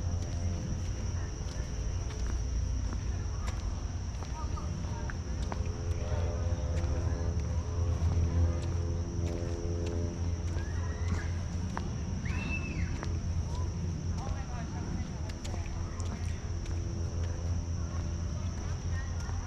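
Outdoor ambience: a steady high-pitched insect drone over a low steady rumble, with faint distant voices and light footsteps.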